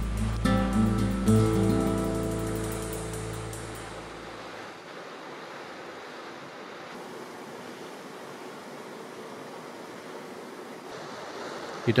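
Background music ends on a low held note that fades out over the first four seconds. Then comes a steady rushing hiss of water and wind from the yacht under way.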